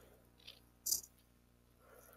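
Faint steady background hum and hiss, with a short sharp hiss or click about a second in.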